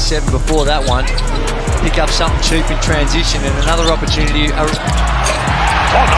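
A basketball dribbled on a hardwood court during live play, a series of irregular sharp bounces, heard under background music with a steady low bass.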